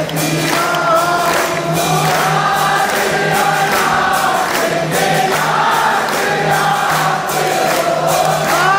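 Group singing of an aarti hymn in chorus, with regular percussion strikes keeping time and a steady low tone underneath.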